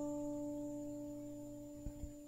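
Acoustic guitar: one chord struck softly at the start and left to ring, slowly fading. A light tap near the end.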